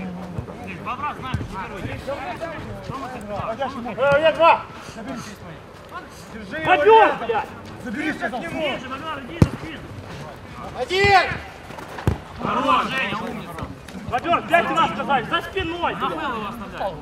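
Football players shouting and calling to each other across an outdoor pitch, with the sharp thuds of a ball being kicked twice, about nine and twelve seconds in.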